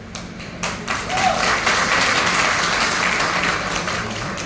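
Audience applauding, many hands clapping together; the clapping swells about a second in and eases off near the end.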